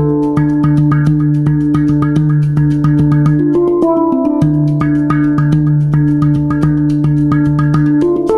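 Swiss-made Hang (steel handpan) played live with the fingers: a quick, even stream of taps over steady low ringing notes, with brighter melody notes picked out above them.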